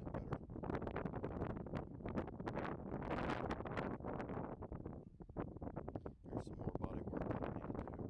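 Wind buffeting the microphone in uneven gusts, a rough rumbling noise.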